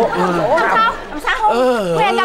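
Voices talking, with a drawn-out voiced sound near the end.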